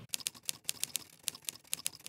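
A quick, irregular run of small dry clicks, about seven a second.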